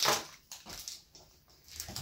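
Foil wrapper of a small chocolate egg crinkling faintly as it is unwrapped by hand, after a short, louder sound right at the start.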